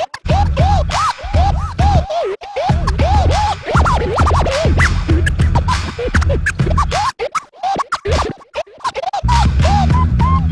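Turntable scratching over a hip-hop beat: a sample dragged back and forth on vinyl, giving quick rising and falling chirps, one after another. The beat drops out for about two seconds near the end, leaving only sparse scratches, then comes back in.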